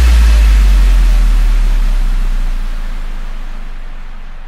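Electronic dance music transition effect: a deep sub-bass boom that has slid down in pitch holds low under a wash of white noise, both slowly fading away.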